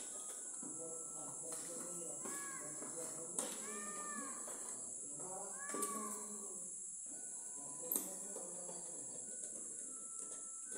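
An animal calling three times, each call rising and then falling in pitch, over faint background voices and a steady high-pitched hiss. A few sharp clicks come through, the loudest near the end.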